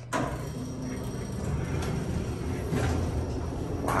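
A 1945 Otis elevator's car door sliding shut after a floor button is pressed: a click at the start, a steady sliding rumble, and a bump near the end as the door closes.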